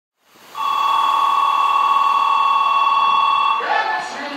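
Electronic station departure bell ringing steadily for about three seconds, then cutting off, the signal that the train's doors are about to close.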